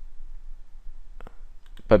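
Two computer mouse clicks in quick succession a little past a second in, with fainter clicks just after, against quiet room tone.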